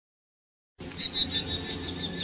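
Silence, then outdoor ambience cuts in just under a second in: a high, pulsing chirping over a low steady hum, with a brief louder bump shortly after it starts.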